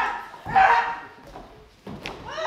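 A short, loud, bark-like vocal call about half a second in that then fades, followed by a sharp click near the end.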